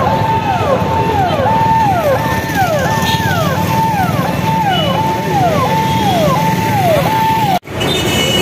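A repeating electronic tone that holds a note and then slides down, a bit more than once a second, over a steady rumble of street traffic. It cuts off abruptly near the end.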